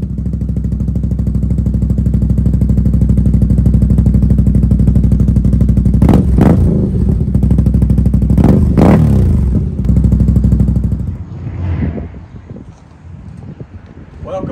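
Engine running loudly with an uneven, pulsing beat and revving twice, about six and nine seconds in. It cuts off about eleven seconds in.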